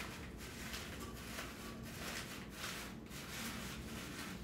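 Faint rustling of artificial flowers being handled and fluffed by hand, over room tone with a low hum.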